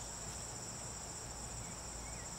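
Steady, high-pitched insect trill, unbroken and even, from an outdoor summer chorus of insects.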